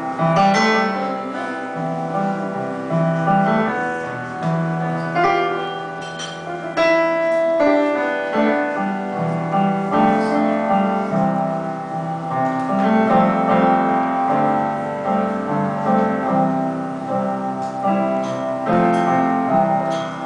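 Solo piano playing an instrumental passage: sustained chords over low bass notes that change about once a second.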